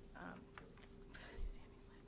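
A woman says a quiet, hesitant "um" into a podium microphone, then pauses. A short soft noise comes about a second and a half in, over a faint steady hum.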